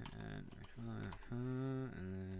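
Typing on a computer keyboard: a scatter of light key clicks as an email address is entered. Over the second half, a man's voice holds a long, level, wordless tone.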